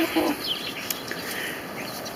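Chickens clucking faintly in the background, a few short calls.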